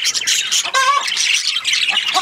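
A group of budgerigars chattering and warbling continuously in a dense, high twittering. About three-quarters of a second in, one louder, lower-pitched call stands out.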